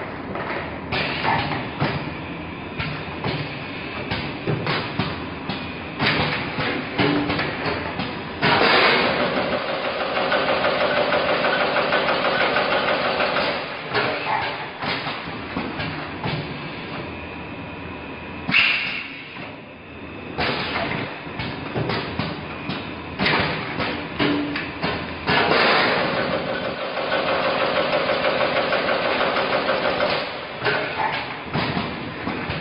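Automatic coffee-capsule bagging machine running, with a constant stream of short mechanical clicks and knocks. A louder, steady whirring sets in about eight seconds in and again near the end, lasting about five seconds each time, and there is one sharp burst in between.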